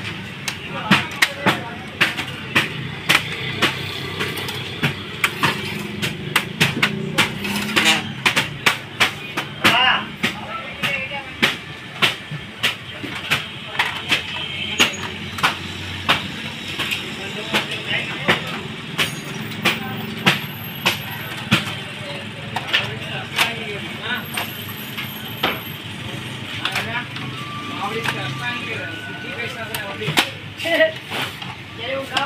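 Plastic parts of an HP LaserJet Pro 400 laser printer being handled: covers, paper guides and the toner cartridge knock and snap into place in a rapid run of sharp clicks, over a low steady hum.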